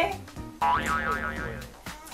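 A comic sound effect added after a joke: a pitched tone that wobbles up and down, starting about half a second in and lasting about a second before fading out.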